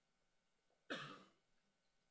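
A man briefly clears his throat once, about a second in, in an otherwise near-silent pause.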